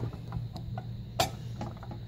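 A few faint clicks from a Holley carburetor's aluminium body and parts being handled, with one sharper click a little after a second in, over a low steady hum.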